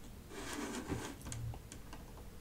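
Faint handling noise: a soft rustle lasting about a second, with several light clicks scattered through it.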